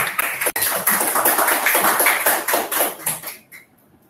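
Audience applauding, the clapping fading out a little after three seconds in.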